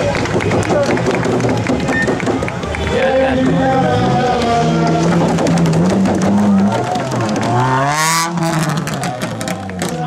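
Ford Fiesta ST rally car engine held at revs that step up and down, then revving up in a rising sweep ending in a sharp bang as the car pulls away, over crowd chatter and background music.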